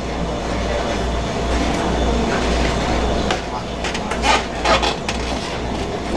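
Audience applauding with a murmur of voices, a dense patter of claps with a few sharper, louder claps about four to five seconds in.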